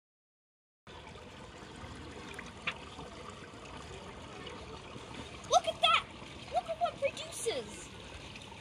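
Steady wash of water stirred in a swimming pool, with a voice calling out in short bursts twice in the second half, louder than the water.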